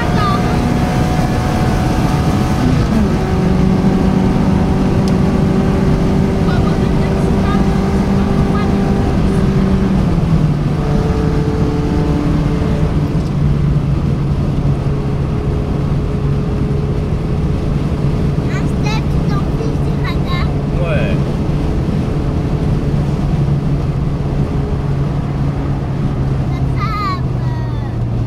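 Peugeot 405 Mi16's 16-valve four-cylinder engine heard from inside the cabin while cruising on a highway, over steady tyre and wind noise. The engine note drops in pitch about ten seconds in and again near the end as the revs fall.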